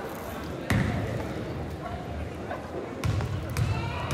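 A basketball bouncing on a hardwood court, with a loud bounce about a second in and more near the end, over the voices of a crowd in a gym.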